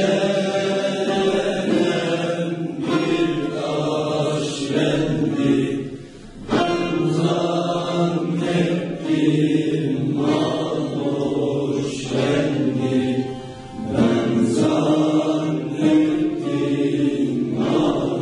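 A youth choir singing a Turkish folk song together, accompanied by a bağlama (long-necked saz). There are brief breaths between phrases about six and fourteen seconds in.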